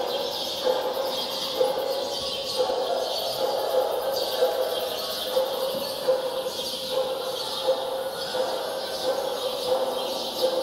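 Live organ and electronic music: a held mid-pitched tone under high, flickering sounds that recur about once a second.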